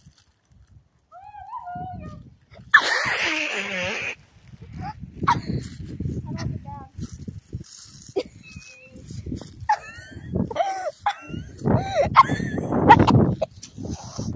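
A child's high-pitched voice gliding up and down in pitch in several stretches, loudest near the end. About three seconds in there is a loud noisy burst that lasts just over a second.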